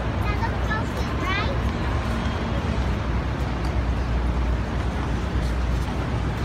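City street ambience: a steady low traffic rumble with voices of passersby, clearest in the first second and a half.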